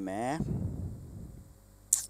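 A man's voice trailing off, a faint noise fading away, then a single short, sharp click near the end.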